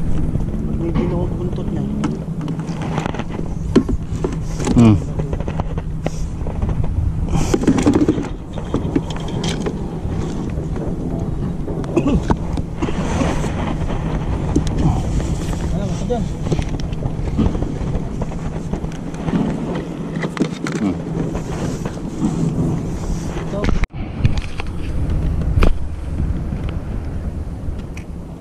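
A boat motor hums steadily at low pitch, with indistinct voices now and then.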